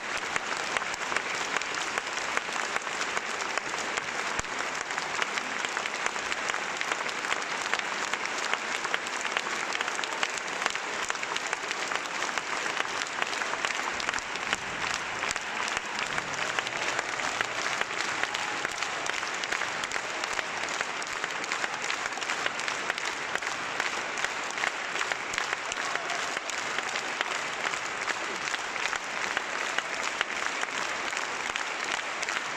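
Audience applauding steadily and densely throughout, a continuous ovation of many hands clapping.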